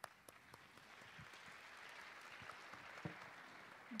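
Faint audience applause, swelling over the first couple of seconds and then holding steady.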